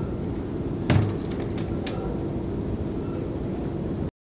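Glass waist door of a grandfather clock swung shut with one thump about a second in, followed by a few faint clicks, over a steady low room hum.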